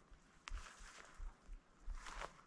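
A hiker's footsteps on a mountain trail: a soft, steady tread of about two to three steps a second, with one sharp click about half a second in.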